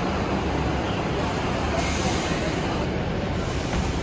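Mercedes-Benz Citaro city bus's diesel engine idling steadily, with a brief hiss about two seconds in.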